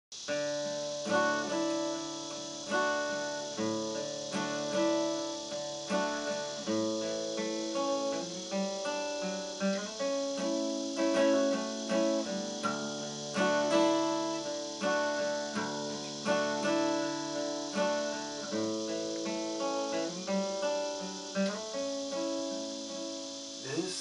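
Solo acoustic guitar, fingerpicked: a slow instrumental intro of plucked notes and chords left to ring over one another.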